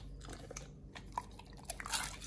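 Pit bull chewing a raw meat meal: wet chewing with a few short, separate bites that come closer together near the end.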